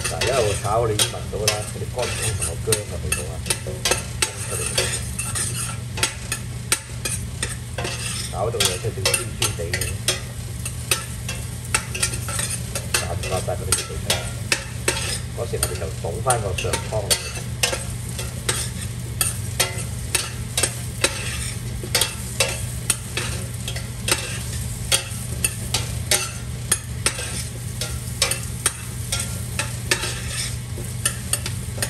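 A long metal spoon stirring and scraping in a stainless steel stockpot, with frequent sharp metal-on-metal clicks, over the sizzle of shallots and ginger frying in a little oil.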